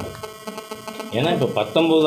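Speech only: a short pause with faint steady hum, then a man's voice resumes speaking about a second in.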